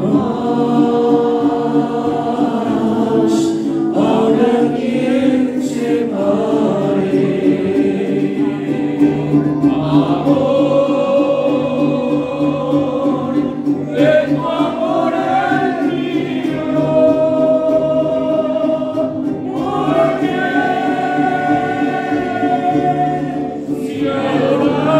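Mariachi group singing together in chorus, accompanied by strummed guitarrón and vihuela, with the trumpets silent. The song comes in phrases with short breaks between them, about every four to six seconds.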